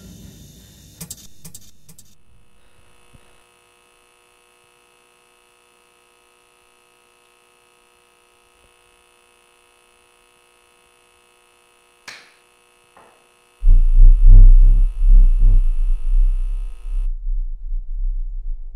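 Horror film sound design. A hit fades out at the start, then there is a long near-silent stretch with faint steady tones, and a single sharp sound about twelve seconds in. From about thirteen and a half seconds a very deep, loud bass rumble swells in several pulses and then holds.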